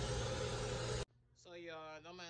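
Steady background hiss with a low hum that cuts off abruptly about a second in. A faint voice starts speaking shortly after.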